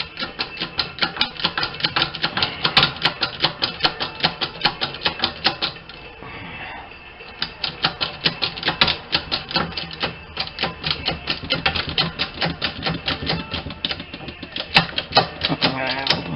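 Six-ton arbor press being worked down onto a punch in a coin punch-and-die set, its ratchet clicking rapidly at about five or six clicks a second. The clicking pauses for about two seconds around the middle, then resumes.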